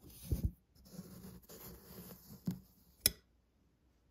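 Small labware being handled on a bench: a soft knock, light rubbing and scraping of plastic and glass, then a sharp click about three seconds in.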